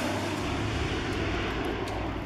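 Steady rushing noise of an aircraft engine overhead.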